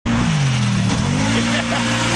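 Engine of a side-by-side off-road utility vehicle running as it drives across a grassy field, the engine note shifting in pitch in the first second and then holding steady, over a hiss of tyres and wind.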